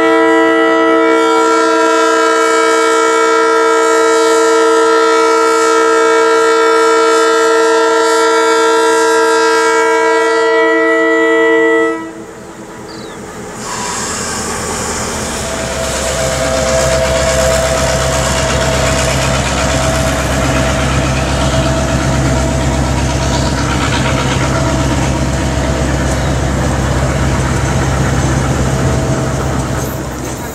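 DBR 1254's horn sounded in one long blast, a chord of several steady notes, for about twelve seconds, then cutting off. A couple of seconds later the locomotive's V8 diesel engine is heard running low and steady, with wheel noise, as the locomotive passes close by.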